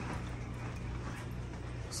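Steady low hum with a faint even hiss, the background of a fish room full of running aquarium air pumps.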